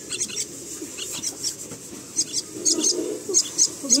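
Common myna chicks making short, high chirps in quick succession, more of them in the second half: nestlings begging to be fed.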